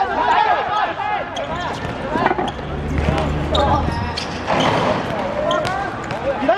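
A futsal ball being kicked and dribbled on a hard court: several sharp strikes of foot on ball, under players' shouts.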